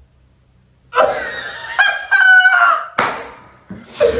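A person's high, wavering shout or squeal lasting about a second and a half, followed about three seconds in by a single sharp knock.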